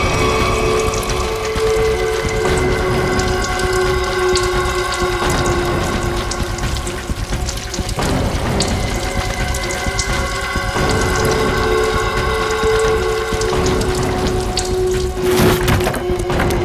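Petrol being splashed from containers onto concrete steps and ground, under a tense background score of long held notes.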